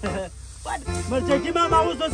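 Background music with people's excited voices over it; a quieter dip in the first second.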